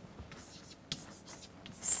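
Chalk tapping and scratching on a blackboard as digits are written, in short faint strokes with one sharper tap about a second in.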